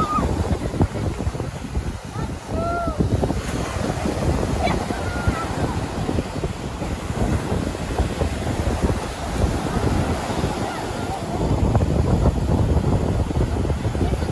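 Ocean surf breaking and washing up the sand in a continuous rush, with wind buffeting the microphone.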